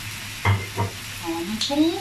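Clams sizzling in a hot wok as a metal spatula stirs and scrapes them, with two sharp scrapes against the wok about half a second and just under a second in.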